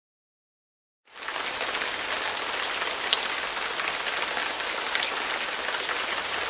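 Steady heavy rain: a dense, even hiss with a few sharper drop ticks, starting suddenly about a second in after silence.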